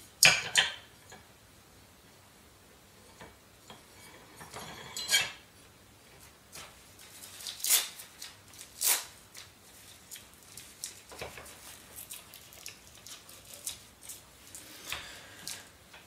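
Scattered clicks and knocks from handling and adjusting a small tripod shooting rest: its cradle and leg parts tapping and snapping, with the loudest knock just after the start and a string of lighter ticks later on.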